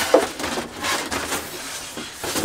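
White foam packing insert being pulled out of a cardboard box, rubbing and scraping against the cardboard.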